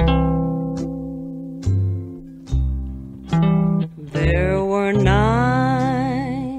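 Electric guitar picking a slow introduction of ringing notes and chords, each fading before the next, about one a second. About four seconds in, a woman's voice enters, singing with vibrato over the guitar.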